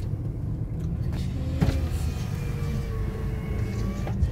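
Low rumble of a car's engine and tyres heard from inside the cabin as the car creeps forward, with a short knock about one and a half seconds in.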